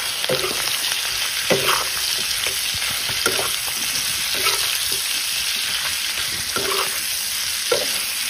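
Pork pieces sizzling in hot fat in a wok-style pan while a metal spoon stirs them, with the spoon scraping and knocking against the pan every second or two.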